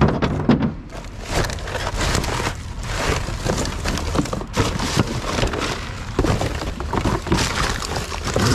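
Plastic bags, cardboard and other rubbish rustling, crinkling and crackling as hands dig through a full bin, with many small knocks and clatters.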